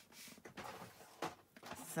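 Faint rustling of thick white cardstock being handled and pressed flat by hand after folding, with a couple of soft taps.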